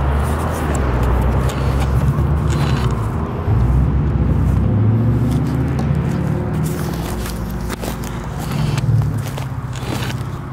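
Road traffic running by, with footsteps crunching and scraping over cut, dried blackberry canes.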